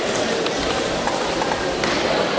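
Steady background din of a crowded sports hall, with music playing.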